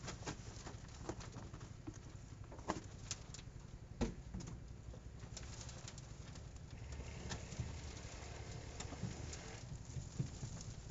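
Potting soil and root clumps pattering and knocking onto a wire mesh screen as pot-grown peanut plants are shaken out, with leaves rustling. The knocks are irregular, the sharpest a few seconds in.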